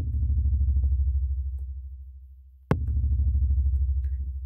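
Deep kick drum from the Sugar Bytes DrumComputer drum-synth plugin, layered with a loaded kick sample, played twice about two and a half seconds apart. Each hit has a sharp click followed by a long, very low boom that fades slowly with a fast pulsing in its tail.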